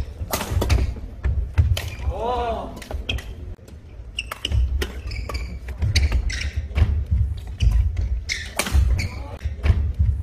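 Singles badminton rally in a large gym hall: repeated sharp cracks of rackets hitting the shuttlecock and heavy footfalls thudding on the wooden court floor, with echo. A short voiced cry comes about two seconds in.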